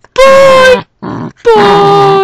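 Small dog crying in two long whining cries, each held at a steady pitch that sags slightly at the end, with a softer, lower sound between them.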